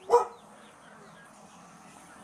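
A dog barks once, a single short bark just after the start.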